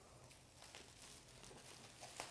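Near silence, with faint scattered crinkles of bubble wrap being handled.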